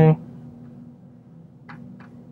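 Quiet room tone with a steady low hum, after the end of a spoken word at the very start. A few faint ticks come near the end.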